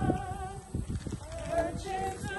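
A group of voices singing a hymn at a graveside, with irregular low thumps under the singing.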